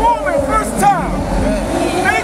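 Men talking up close, their words unclear, over a steady low rumble.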